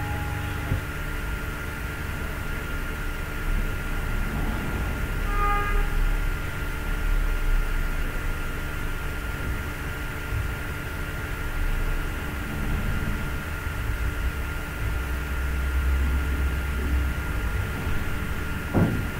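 Steady background noise with a constant thin whine and a low hum, a brief pitched tone about five and a half seconds in, and a low rumble swelling near the end.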